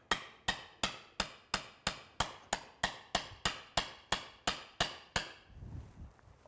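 Hammer striking the end of a wooden 1x2 stick set against an elk's upper canine, about three sharp knocks a second, stopping about five seconds in. Each blow drives the ivory (whistle tooth) loose from the jaw.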